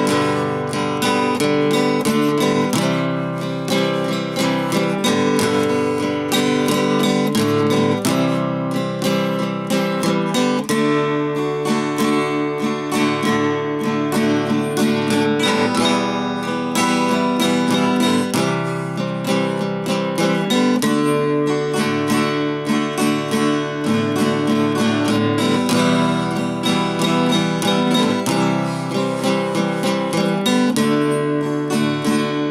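A 1960s Harmony H165 all-mahogany steel-string acoustic guitar, strummed steadily through a chord progression, with the chords changing every second or two.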